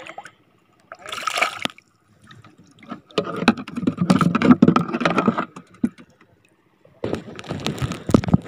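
Shallow seawater splashing and sloshing in bursts as a person moves through it with a spear: a short splash about a second in, a longer stretch of sloshing from about three to five and a half seconds, and more near the end.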